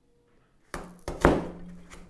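Hand-held hole punch forced through folded cardboard: a crunching scrape about three quarters of a second in, then a single sharp thunk as it punches through both layers.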